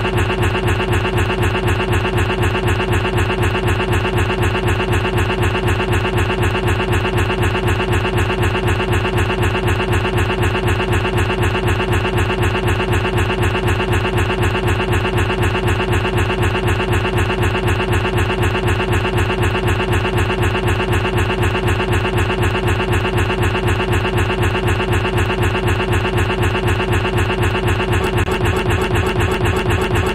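A tiny fragment of the song that was playing repeats over and over, very fast, as a steady unchanging buzzing stutter: the sound buffer stuck looping after Windows 10 crashed to a blue screen.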